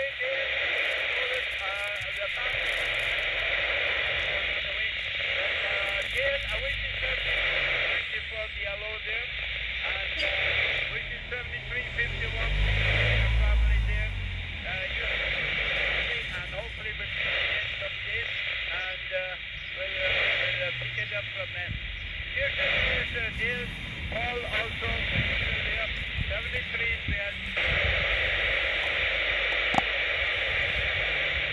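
A CB radio's speaker hissing with static, with faint, garbled voices of distant stations fading in and out through the noise as signals skip in from far away. A brief low rumble about halfway through.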